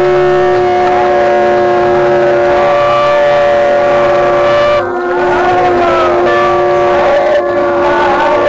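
Several conch shells blown together in long, loud sustained blasts, their steady notes at different pitches overlapping. One note breaks off just under five seconds in and comes back with its pitch sliding downward.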